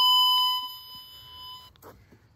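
Fluke Networks Pro 3000 tone probe sounding a steady, high-pitched tone as it picks up the tracer signal on a car wire. The tone fades after about half a second and cuts off shortly before the end.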